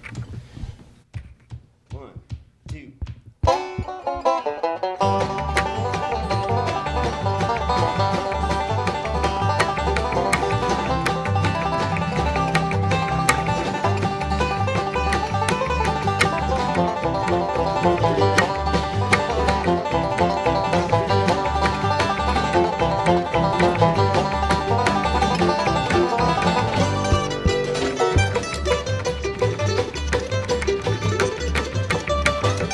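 Acoustic bluegrass band playing an instrumental tune on banjo, mandolin, acoustic guitar, upright bass and djembe. After a few faint taps the playing starts about three and a half seconds in, and the upright bass and hand drum join about a second later, keeping a steady beat.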